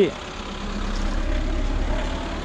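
A motor vehicle engine running, a steady low hum that swells a little over the first half second and then holds.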